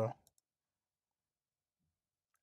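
A man's spoken word trailing off, a couple of faint clicks just after, then dead silence.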